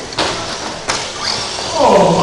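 2WD short-course RC trucks racing on an indoor track under a steady hiss of noise, with two sharp knocks about two-thirds of a second apart. A man's voice begins near the end.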